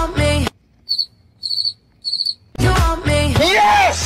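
Cricket chirping sound effect: three short, trilled high chirps about half a second apart in otherwise dead silence, the stock 'crickets' gag for an awkward pause.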